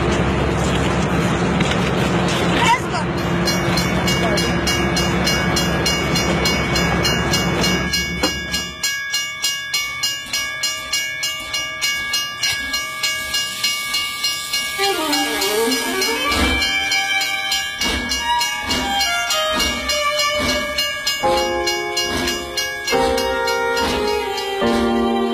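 A departing train with crowd voices over its loud, steady rumble. About eight seconds in, the rumble gives way to a regular clatter of wheels over rail joints, about two to three beats a second. In the second half, film score music with strings comes in and takes over.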